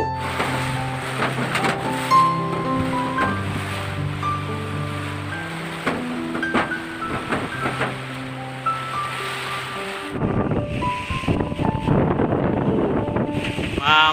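Background music of sustained piano-like notes over the roar of storm wind. About ten seconds in, the music stops and strong cyclone wind buffeting the microphone takes over, louder and gusty.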